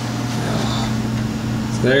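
Steady mechanical hum with an even rushing noise behind it, holding at a constant level.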